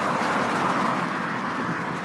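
Road traffic: a vehicle passing on the street, a steady rush of tyre and engine noise that eases off a little toward the end.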